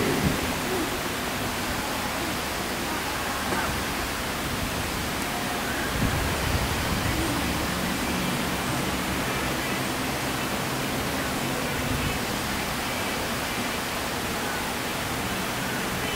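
Steady hiss of recording noise and room tone, with no speech, and a faint soft knock about six seconds in.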